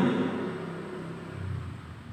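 A pause between spoken phrases: the man's voice fades out in the room's echo over about half a second, leaving faint hiss and a low rumble.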